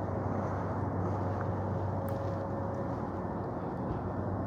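Steady outdoor background noise with a low hum, and no distinct event.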